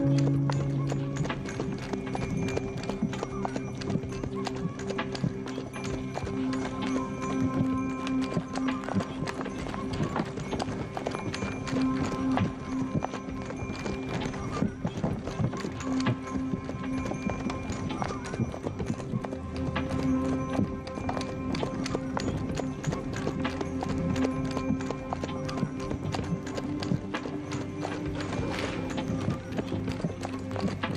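A horse's hooves clip-clopping steadily as it pulls a wooden sleigh over snow, with background music of long held notes.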